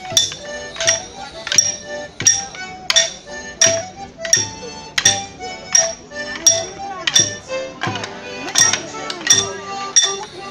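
Wooden morris sticks clashing together in a steady dance rhythm, a sharp clack about every 0.7 seconds, over melodeon music.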